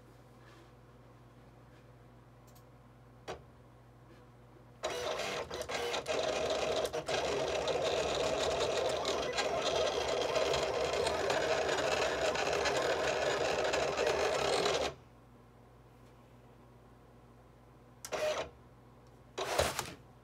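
Silhouette Cameo 4 vinyl cutter cutting a design with a CB09 blade in an adapter: the carriage and rollers whir steadily for about ten seconds, starting about five seconds in and stopping suddenly. Two short machine sounds follow near the end as the cutting mat is fed out.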